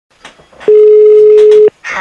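A single loud, steady telephone tone lasting about a second, a ringback tone as a call goes through, with a few faint clicks before it.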